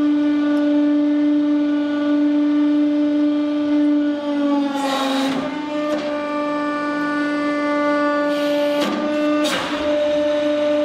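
Hydraulic press running with a steady loud pump drone while its ram crushes a square steel tube; the drone sags briefly in pitch about four to five seconds in. Harsh crunches from the steel tube buckling and folding come about five seconds in and again near the end.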